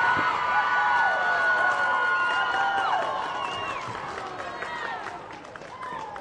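Celebrating players and crowd cheering, with high-pitched held 'woo' shouts that slide down in pitch and trail off, over clapping. The cheering fades in the second half.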